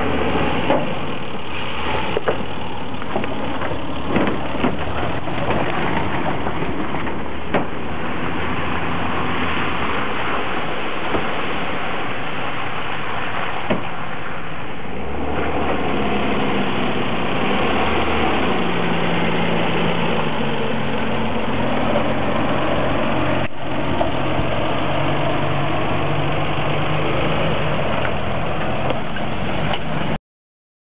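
Four-wheel drive's engine running under load and revving as it climbs a steep dirt hill, its pitch rising and falling, with a few short knocks along the way.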